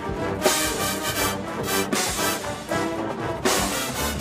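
A drum corps playing: brass ensemble chords over front-ensemble mallet percussion such as marimbas, with strong accented hits about twice a second.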